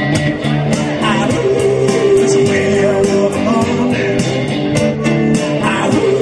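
Live rock band playing: electric guitar over drums with a steady cymbal beat, and a man singing.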